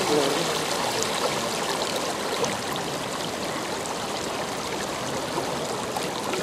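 Steady rushing wash of the flooded Saptakoshi river, with small waves lapping at the bank close by. A voice trails off in the first moment.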